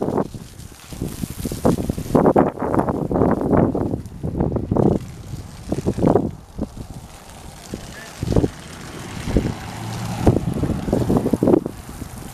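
Wind buffeting the microphone in irregular gusts, a rough uneven rumble.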